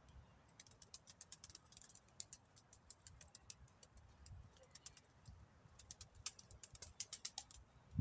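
Faint, quick, irregular clicks in little clusters: a flock of pigeons pecking grain off bare ground.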